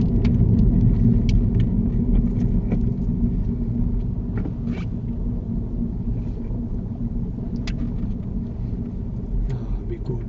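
Car engine and road rumble heard from inside the cabin, easing off gradually as the car slows.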